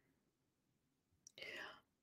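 Near silence, then a short, faint, breathy whisper-like sound from a woman's voice about a second and a half in.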